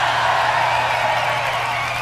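A large concert audience cheering and applauding as a steady roar of crowd noise.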